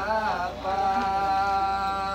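A voice chanting in long drawn-out notes: a wavering phrase, a brief break about half a second in, then one long held note.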